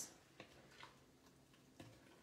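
Near silence, with three faint taps of a wooden spoon against the pot as soup is stirred: about half a second in, just under a second in, and near the end.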